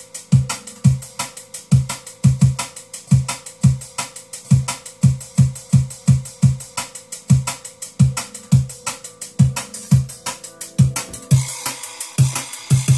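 A drum and bass track's beat played back in Serato DJ as a recorded Flip of quantized hot-cue juggling. Deep kick drum hits come about three times a second with sharp snare and hi-hat hits over them.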